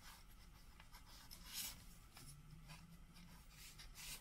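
A metal fork pricking a raw shortcrust pastry base in a pie dish, docking it: faint, quick scratchy pokes, with one louder scrape about a second and a half in.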